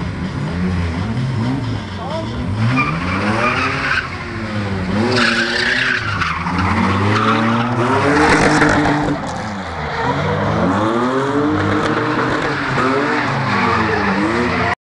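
Drift car engine revving up and down again and again as the car slides sideways, with tyres squealing on the tarmac. It is loudest about halfway through, as the car passes close by.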